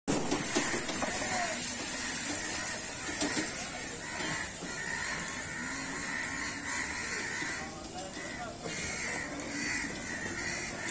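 A flock of crows cawing, many harsh calls repeating and overlapping, over steady background noise.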